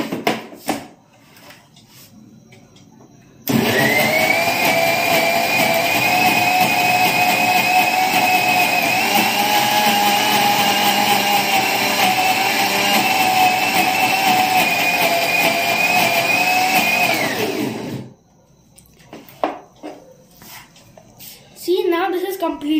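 Electric mixer grinder running with its small stainless-steel jar, grinding soaked paper into papier-mâché pulp: a loud steady motor whine that starts abruptly a few seconds in, then drops in pitch and stops near the end. A few clicks at the start as the jar is set on the base.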